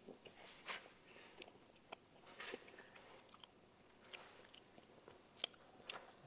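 Faint chewing and mouth sounds from a person eating a bite of pempek kulit (fried fish-skin fish cake), with scattered soft clicks.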